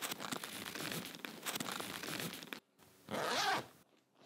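Zipper on a nylon backpack being run along its teeth: a long rasping zip lasting about two and a half seconds, then after a short pause a shorter, louder zip near the end.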